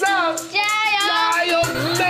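Children chanting "火上加油" ("add oil to the fire") in a sing-song voice over background music with a steady beat. A low buzz comes in near the end, as the answer is marked wrong.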